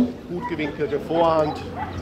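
A dog barking in the background under faint speech.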